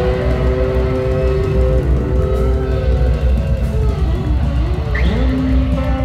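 A blues band playing live, recorded from the audience: electric guitar holding sustained lead notes over a heavy bass end, with notes sliding up and down in pitch about four seconds in before settling on a new held note.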